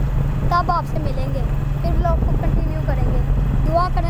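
A boy talking over the steady low rumble of a moving vehicle and the wind of the ride.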